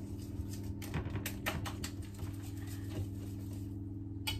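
Wire balloon whisk beating wet egg, milk and flour batter in a bowl: quick, irregular clicks and taps of the wires against the bowl, bunched about a second in.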